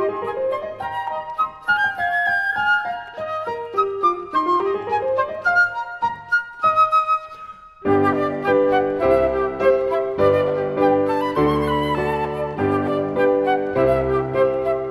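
Flute and piano playing a classical chamber piece: quick rising and falling runs and a held high flute note. About eight seconds in, the music turns fuller and louder, with deep piano chords under the flute.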